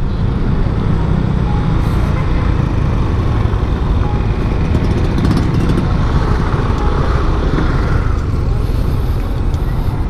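Steady wind rush on an action camera's microphone while riding a scooter at road speed, with road and scooter engine noise underneath.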